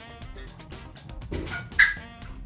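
Background music, with one short, loud, high-pitched sound near the end.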